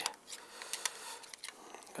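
A few faint, sharp clicks and soft scraping as a screwdriver tip works grease into the slide-pin boot of a motorcycle brake caliper held in gloved hands.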